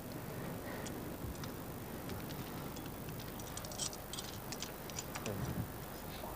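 Metal climbing hardware clinking lightly in scattered short jingles, most of them in the second half, over a steady background hiss.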